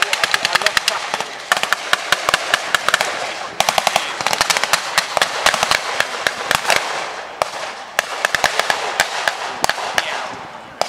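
Blank gunfire in a mock battle: ragged, rapid strings of rifle and machine-gun shots, many sharp cracks a second, with brief lulls about three and a half seconds in and again near eight seconds.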